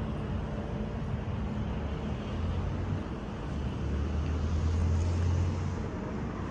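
CAF Urbos 3 light rail tram moving slowly past at a stop: a steady low hum of the running gear with wheel-on-rail noise, getting somewhat louder from about the middle on.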